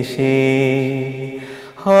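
A man singing a Bangla Islamic song (gojol), holding one long note that slowly fades, then starting the next line loudly near the end.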